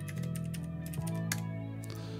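Computer keyboard being typed on in scattered keystrokes, over quiet background music with held low notes.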